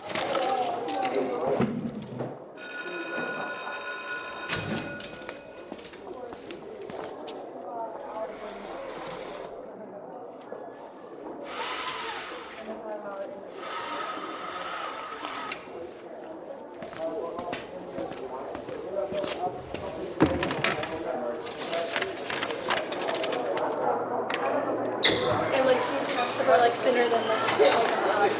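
Television commercial soundtrack: voices over soft background music, with a brief ringing tone about three seconds in.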